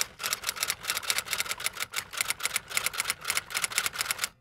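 Typewriter keys clacking in a rapid, even run of about eight strokes a second, a typing sound effect.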